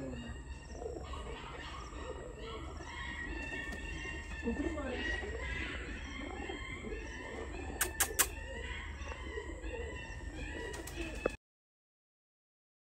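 Domestic pigeons cooing, with short higher bird chirps over them. Two sharp clicks about eight seconds in, and the sound cuts off suddenly near the end.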